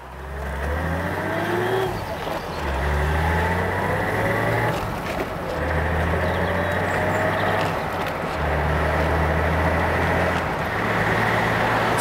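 BMW E21 323i's straight-six engine pulling away and accelerating up through the gears. Each time it rises in pitch for about two seconds, then drops away briefly at a gear change, four or five times over.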